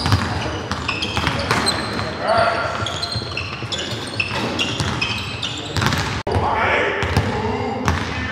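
Basketballs bouncing on a hardwood court, with short, high sneaker squeaks and players' indistinct voices in the gym.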